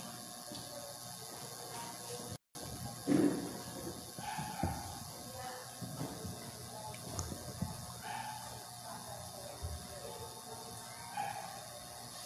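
Low room noise with a steady hiss and a few soft knocks and shuffles. The sound cuts out completely for a moment a little over two seconds in, and the sharpest knock comes just after.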